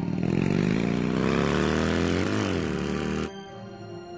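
A car engine accelerating away, its pitch climbing steadily, with a brief rise and fall near the middle before it cuts off suddenly past the third second.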